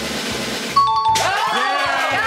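A game-show answer-reveal chime, two short tones stepping down in pitch about a second in, over background music with a steady beat. Several voices cheer right after it.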